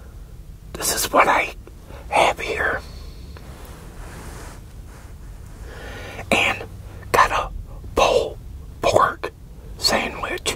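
A man whispering a few short phrases, with pauses between them.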